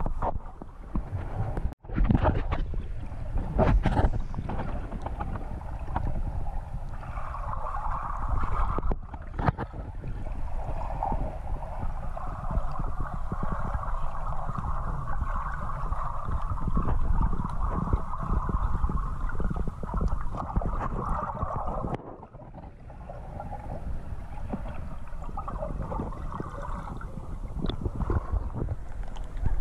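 Muffled underwater noise heard through a camera's waterproof housing while snorkelling: a steady rushing of water with low rumble. There are a few sharp knocks in the first few seconds, and the sound dips briefly a few seconds before the end.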